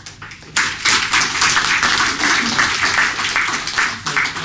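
Audience applauding, starting about half a second in, a dense patter of many people clapping in a small room.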